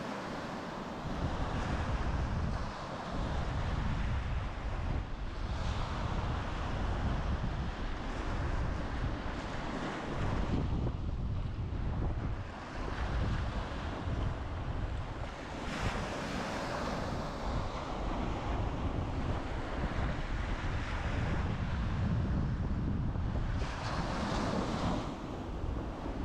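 Small surf breaking and washing up a sandy beach, surging every few seconds as each wave runs in, with wind buffeting the microphone.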